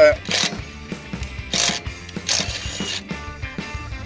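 AEG cordless power wrench spinning a socket on a van's wheel bolts in short bursts, with a fast mechanical rattle, as the bolts are loosened to take the front wheel off.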